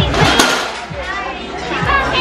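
Girls' voices over background music with a steady low beat.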